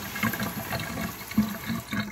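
Kitchen faucet running steadily, its stream splashing into a stainless steel sink basin.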